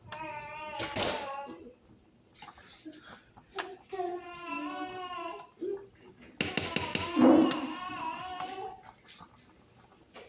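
A teething baby fussing and crying in several drawn-out, high-pitched whines. A short clatter of clicks comes about six and a half seconds in.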